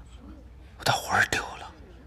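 A short whispered, breathy utterance about a second in, ending in a sharp click, over a faint low hum.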